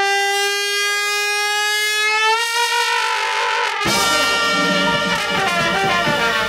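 Dixieland jazz band: a brass horn holds one long note, rising a little in pitch after about two seconds, then the full band with drums and string bass comes in just before four seconds.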